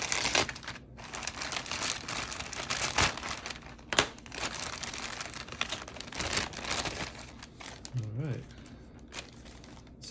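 Clear plastic bag crinkling and rustling as plastic model-kit sprues are handled and drawn out of it, with a sharp click about four seconds in.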